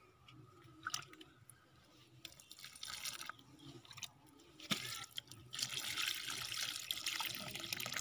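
Water poured from a plastic mug, splashing and trickling onto dry soil around a sapling. It is faint and patchy at first and grows into a steady pour in the second half, with a sharp knock a little before it.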